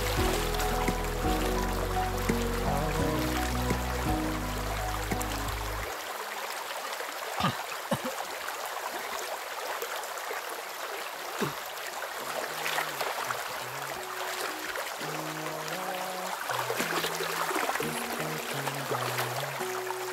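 Background music with a stepped bass line that drops out about six seconds in and returns near the end, over the steady rush of shallow river water, with a few sharp splashes.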